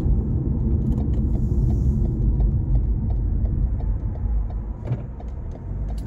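Steady low road-and-engine rumble inside a moving car's cabin. Through the middle of it comes a faint, regular ticking about three times a second, typical of a turn-signal indicator.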